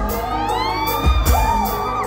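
Live band playing a Thai pop song, with electric guitar, bass and keyboards. A rising glide runs through the melody during the first second, and a heavy beat hits about a second in.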